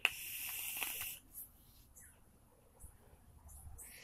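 A long draw on a vape's rebuildable dripping atomizer firing at 55 watts: a rush of air through the drip tip and sizzle from the Clapton coil for about a second at the start. A faint breathy exhale follows near the end.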